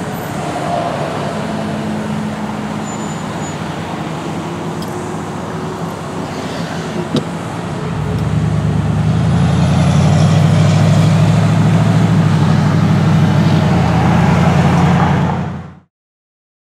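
Motor vehicle engine and road traffic noise. About halfway through, the low engine drone grows louder and then holds steady, until the sound cuts off abruptly near the end.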